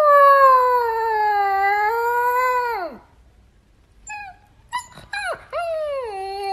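Husky-type puppy howling: one long "awoo" of about three seconds that sags slightly in pitch and falls away at the end. After a short pause come a few brief high calls, then another howl begins near the end.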